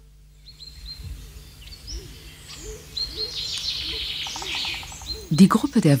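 Wild birds chirping in short high calls over quiet outdoor ambience, with a lower note repeating about twice a second beneath them.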